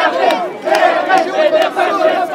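Dense protest crowd shouting and yelling at once, many voices overlapping into a loud din.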